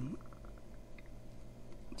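A few faint small clicks as a potentiometer with crocodile clips on its lugs is handled, over a low steady hum.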